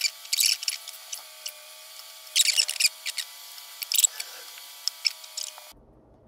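Short hissy, squeaky bursts from a plastic squeeze bottle of wood glue being squeezed and rubbed against the props, with light handling of the clay sushi pieces as they are pressed onto the plate; the loudest bursts come just after the start and about two and a half seconds in.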